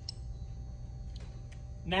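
Steady low hum with a few faint clicks.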